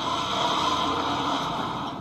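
Industrial sewing machines running steadily in a garment workshop, an even mechanical hum with no distinct strokes.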